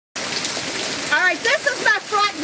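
Heavy rain pouring down in a steady hiss, cutting in suddenly just after the start. A woman's voice joins over it about a second in.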